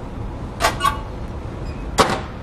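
Steady low hum of a production printing press, with two short mechanical clicks from its jam-clearance levers a little over half a second in, and a sharp knock at the very end.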